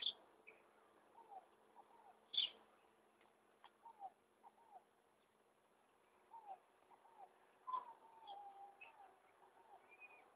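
Faint bird calls: short falling notes, often in pairs, repeating throughout, with a few sharper, louder calls at the very start, about two and a half seconds in, and just before eight seconds.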